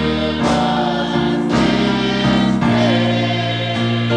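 Church choir singing a gospel-style sacred song over sustained electric piano chords that change about once a second.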